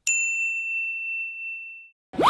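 A single ding sound effect: one struck, high, bell-like tone that rings clearly and fades away over about two seconds.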